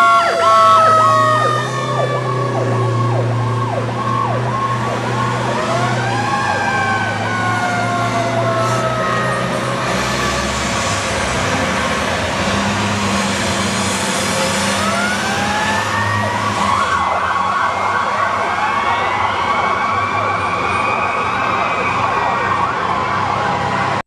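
Several fire engine sirens sounding together and overlapping. Slow wails rise and fall while fast yelping warbles run at the start and again from about two-thirds of the way in.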